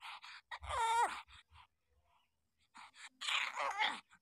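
Week-old newborn puppies whimpering: a short cry falling in pitch about a second in, and a longer, louder cry near the end, with brief rustling at the start.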